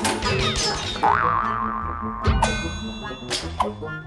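Cartoon sound effects over background music: a springy pitch glide that rises and falls about a second in, then a sharp hit with a falling pitch a little past two seconds, and two short knocks near the end.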